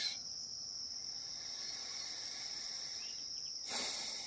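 Steady high-pitched chorus of insects trilling without a break, with a short rush of noise near the end.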